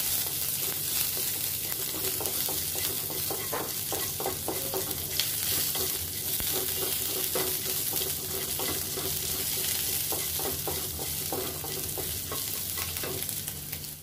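Dried red chillies and crushed ginger sizzling steadily in hot mustard oil in a kadai, while a wooden spatula stirs and scrapes against the pan in frequent light clicks.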